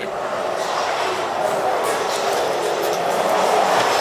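A steady, loud rolling rumble with a rushing quality that starts suddenly and holds level throughout.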